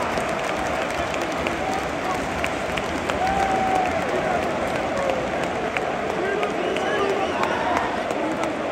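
Large football stadium crowd applauding and shouting, a steady dense roar of the home fans with individual voices rising out of it.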